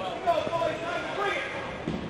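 Indistinct voices talking in the rink, with one sharp knock about a third of a second in.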